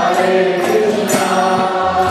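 Devotional kirtan chanting: voices singing a mantra on held notes, with only light percussion.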